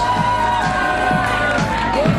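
Music playing loudly, with a crowd cheering behind it.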